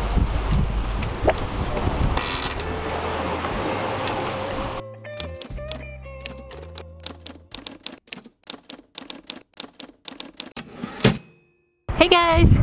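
Wind and sea noise rumbling on a sailboat's deck, then a sudden cut to a typewriter sound effect: rapid key clicks over a few low music notes, ending near the end with a bell-like ding and then silence.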